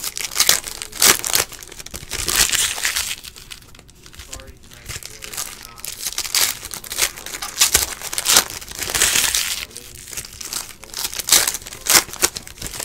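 Foil wrappers of 2017-18 Panini Donruss Optic basketball card packs being torn open and crinkled by hand: an irregular run of crinkling and tearing rustles with short pauses between.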